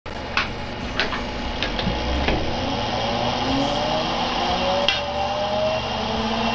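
Homemade electrostatic motor's clear acrylic vane rotor spinning with a steady whirring hiss, its faint hum slowly rising in pitch as it gains speed. Several sharp snaps sound through the whirr, most in the first half.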